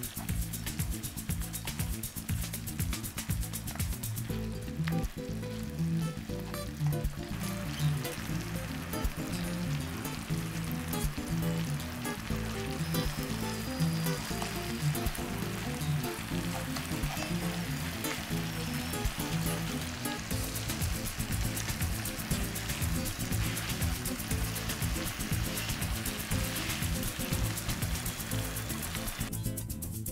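Sugar syrup and oil bubbling and sizzling in a frying pan around fried sweet potato chunks, under background music with a steady beat.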